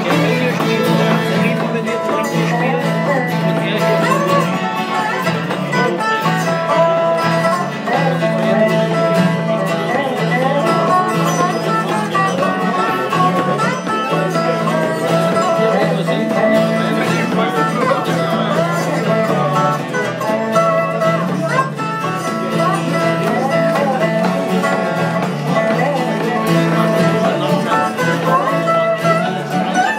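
Live bluegrass-style string band: a resonator guitar played lap-style with a slide bar, its notes gliding in pitch, over strummed acoustic guitar.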